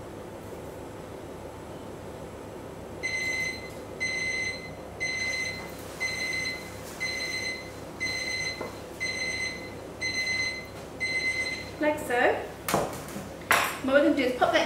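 Electronic kitchen-appliance beeper sounding nine short high beeps, about one a second, each the same steady pitch.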